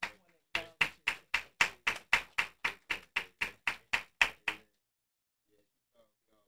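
Hands clapping in a steady rhythm, about four claps a second, for roughly four seconds starting about half a second in.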